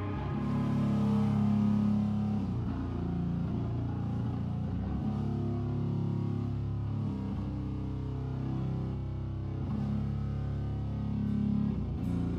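A heavy metal band playing live at a slow pace: low electric guitar chords held for a couple of seconds each, with a few drum hits.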